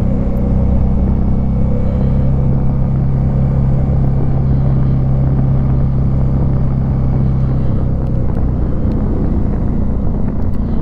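Suzuki V-Strom 650's V-twin engine running at a steady cruising speed on the move, its note holding level, with rushing wind over it.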